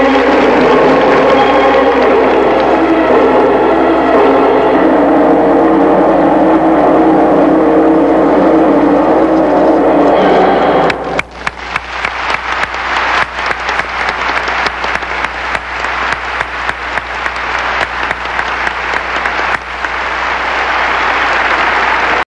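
Skating program music with held chords, stopping abruptly about halfway through; then an arena audience applauding, the clapping building louder toward the end.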